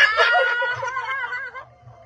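A group of women laughing together, loudest at the start and dying away after about a second and a half.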